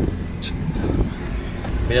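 Steady low rumble of a car driving, heard from inside the cabin, with one sharp click about half a second in.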